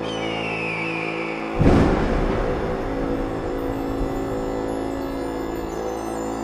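Eerie soundtrack music: steady held tones with chimes and a high tone sliding down at the start. About one and a half seconds in comes a sudden loud low hit that rings on.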